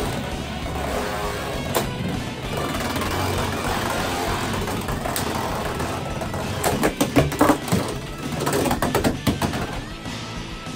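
Beyblade X tops Dran Dagger and Rhino Horn spinning and clashing over background music, with single sharp clicks of contact early on and bursts of rapid clicking clashes about seven and nine seconds in.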